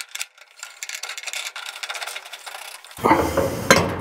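Steel parts clinking and rattling as the axle and rear tongue of a leaf-vacuum trailer are worked into the wheel support, then a louder metal clunk about three seconds in and another shortly after.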